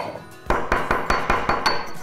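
Pestle knocking and grinding cardamom seeds in a dark stone mortar, breaking them down to a powder: a quick run of sharp knocks, about six or seven a second, starting about half a second in.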